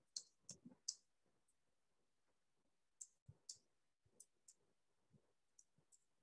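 Near silence broken by faint, scattered clicks: three in the first second, then several more between about three and six seconds in.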